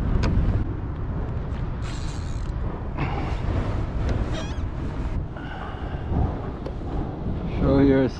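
Wind buffeting the microphone on open water, a steady low rumble throughout, with faint bits of voice and a short louder voice sound near the end.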